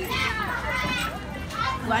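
Children's voices talking among other background voices, with no words near the microphone.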